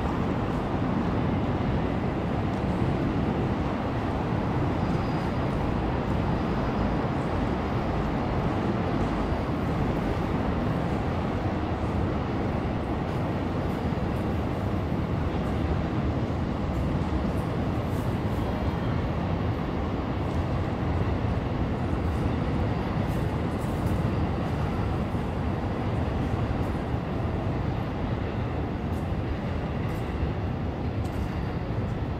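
A steady low rumble of heavy vehicle noise, even and unbroken, with no distinct passes or other events standing out.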